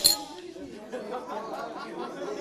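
A single sharp clink right at the start, then a low murmur of voices.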